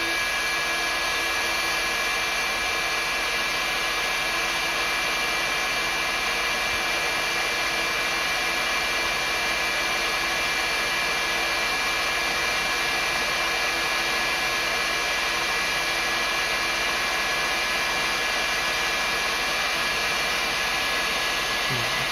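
Heat gun set near its highest setting, running steadily: an even rush of air with a faint high whine. It is heating the underside of an aluminium-backed LED board to melt the LED's lead-free solder.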